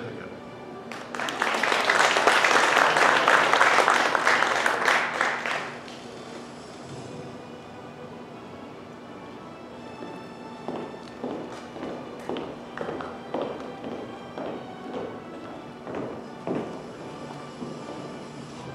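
Hand clapping from a small group for about four and a half seconds, starting about a second in. Then quiet background music with footsteps on a stage floor, about one and a half steps a second, in the second half.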